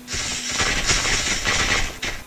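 Sound effects from an animated action trailer's soundtrack: a dense run of mechanical clattering and clicking lasting nearly two seconds, then cutting off, with music under it.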